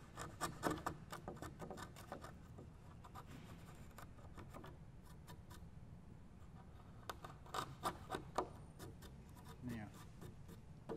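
Steel bench chisel pushed by hand, paring and scraping the bottom of a butt hinge recess cut in pine: faint short scrapes and clicks, in a cluster near the start and another about three-quarters of the way through. This is the final clean-up of the hinge housing to depth.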